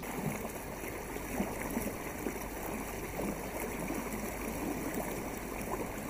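Water rippling and lapping along the hull of a canoe moving through the water, a steady trickling wash.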